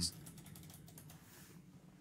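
Faint rapid clicking of typing on a computer keyboard, mostly in the first second, over a low steady hum.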